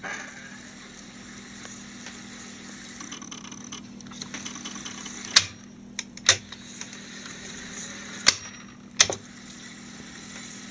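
Opened-up Sanyo MR-115E reel-to-reel tape recorder mechanism with a low steady motor hum, and four sharp clicks as its control levers are switched by hand, in two pairs a little under a second apart.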